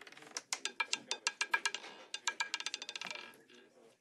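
Roulette ball dropping into the spinning wheel and clattering over the pocket separators: a run of sharp, slightly ringing clicks, irregular at first, then quickening and fading away after about three seconds as the ball settles into a pocket.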